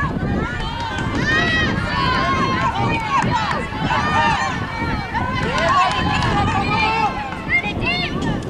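Many overlapping voices of soccer players and sideline teammates calling and shouting across the field during play, none clear enough to make out as words.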